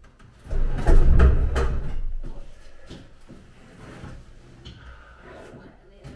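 Heavy scraping and knocking of wood lasting about a second and a half, starting about half a second in: an unbolted marine diesel engine being shoved along wooden planks.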